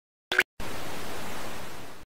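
A short click as a TV remote's button is pressed, then a steady hiss of television static that tapers off slightly at the end.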